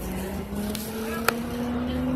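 City bus running, heard from inside the cabin: a low drone with a tone that rises slowly in pitch. There is one sharp click a little past halfway.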